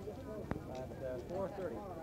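Indistinct talking with no clear words, and one sharp click about half a second in.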